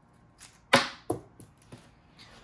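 A small hard object striking a desk top with one sharp knock, followed by three lighter knocks that die away, like a small part dropped and bouncing while AirTag cases are being handled.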